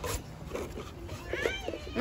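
A short, high-pitched, meow-like call that rises and falls, about one and a half seconds in, over faint background noise.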